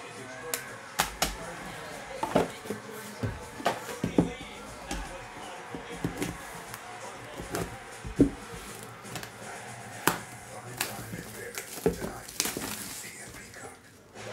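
Hard plastic card holders and card boxes being handled and set down on a table: irregular sharp clicks and taps, about one a second.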